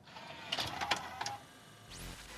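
A small mechanism whirring, with several sharp clicks between about half a second and just over a second in, then a quick rising sweep near the end.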